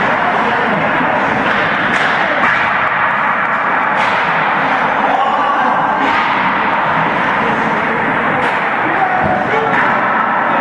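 Ice-rink din of voices, with sharp knocks of hockey pucks hitting sticks and boards every couple of seconds.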